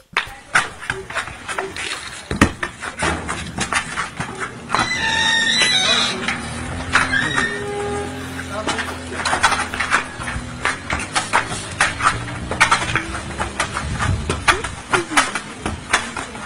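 Knocks and scuffs of a goat pushing a football about on a concrete floor, with people's voices and a short pitched call about five seconds in.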